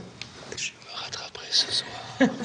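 A woman whispering a few words: soft breathy hisses without voice, about half a second in and again past the middle.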